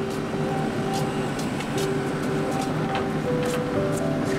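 Soft background music over the steady running of a mini excavator's diesel engine, with a few sharp knocks.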